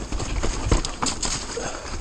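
A 2018 Orbea Rallon 29er enduro mountain bike ridden fast down a rough dirt trail: tyres rolling over dirt and roots, with repeated sharp knocks and rattles from the bike over the bumps and a low rumble throughout.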